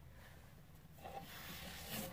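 Faint rubbing and rustling of books and papers being slid off the top of a wooden bookshelf, growing louder near the end.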